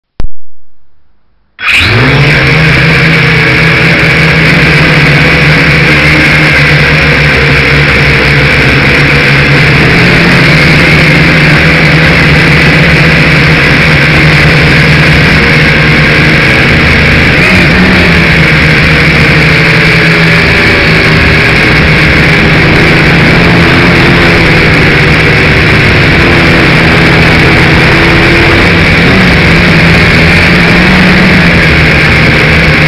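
A small radio-controlled aircraft's motor and propellers, very loud right at the onboard camera's microphone. They spin up suddenly about a second and a half in, then run at a steady pitch with slight wavers as the craft lifts off and flies.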